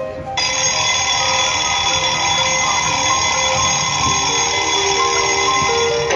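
A cartoon alarm clock ringing, a steady electric bell ring that starts about half a second in, over a light background music melody, played through a laptop's speakers.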